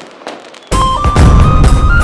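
TV show title jingle: a faint tail, then about 0.7 s in a sudden loud hit into punchy music with heavy bass and a high melody of held notes.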